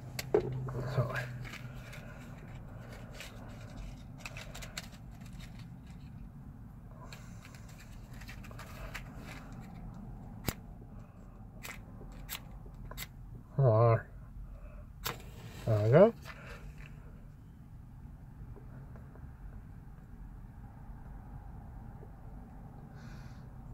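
A cigar being lit with a match and puffed on: scraping and handling noises in the first few seconds, then soft puffing with a few sharp little pops of the lips on the cigar. Two short hummed voice sounds come about 14 and 16 seconds in.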